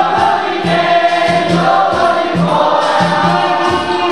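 Capoeira roda music: a group singing in chorus over berimbaus and a steady low atabaque drumbeat, about three beats a second, with hand-clapping.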